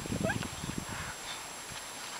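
Great Danes bounding through deep snow: several muffled thumps in the first second, with a brief high squeak among them, then it goes quieter.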